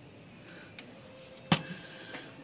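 A sharp metal-on-metal click with a brief ringing after it, about a second and a half in, from metal striking among the typebars of a Smith Corona portable typewriter. A fainter tick comes just before it.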